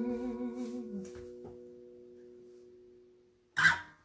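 The final held sung note of a folk song, with vibrato, ending with a slight drop in pitch about a second in, while the last chord on the acoustic guitar rings on and fades away over the next few seconds. Near the end there is a short, loud sound.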